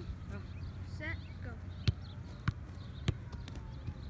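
A soccer ball being kicked on the grass: three sharp thuds about 0.6 s apart, starting about two seconds in.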